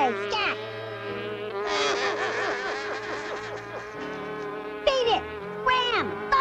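Cartoon buzzing of a large fly: a steady drone with quick up-and-down swoops in pitch as it darts about, and sharp falling glides near the start and near the end.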